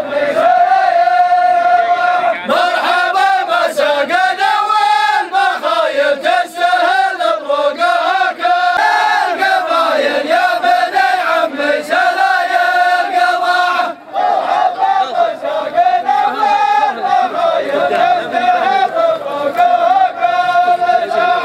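A group of men chanting together in unison, a long-held melodic line that rises and falls slowly, with a short break about fourteen seconds in.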